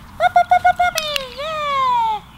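A woman's high-pitched encouraging voice: a quick run of about six short, even calls, then one long call falling in pitch, as praise for a puppy coming when called.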